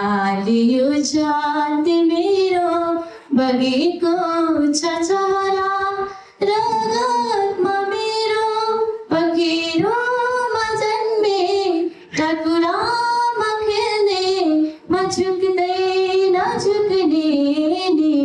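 A young woman singing solo into a microphone, unaccompanied, in long held phrases with short breaths between them.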